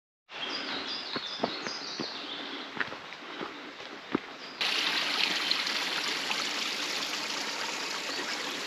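Footsteps knocking on a stony forest path while a small bird repeats short high notes; about halfway through the sound cuts to a small stream trickling and splashing over rocks, a louder, steady rush.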